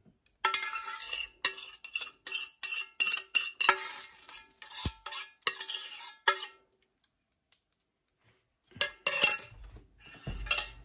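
A metal utensil scraping and knocking against a stainless steel skillet as gravy is scraped out of it, the pan ringing faintly with the knocks. The scraping stops about two-thirds of the way through, and a brief clatter follows near the end.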